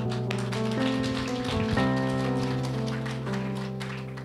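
Soft instrumental worship music: sustained keyboard chords that change every second or so, with a light scattered patter of taps over them.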